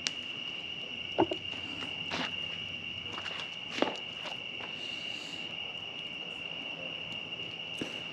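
Wood fire crackling in a steel portable fire pit, with a few sharp pops, over a steady high cricket trill.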